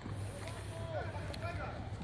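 Scattered shouts of football players calling to each other across the pitch, with a steady low hum underneath.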